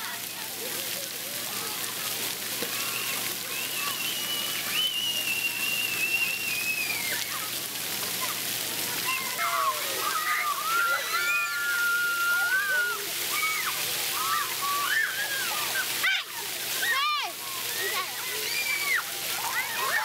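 Splash pad ambience: water jets spraying and splashing in a steady hiss, with children shouting and squealing over it, busier from about halfway in.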